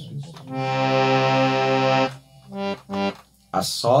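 Harmonium reeds sounding one steady held note for about a second and a half, then two short notes. A man's voice starts near the end.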